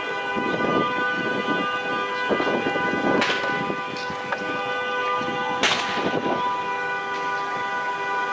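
A steady, unchanging alarm-like tone with several pitches sounds throughout, over bursts of noisy crackling from the vehicle fire. Two sharp pops come a little after three seconds and again near six seconds.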